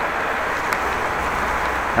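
Steady rushing noise of riding a bicycle: wind on the microphone and tyres running on a wet cycle path, with one faint click less than a second in.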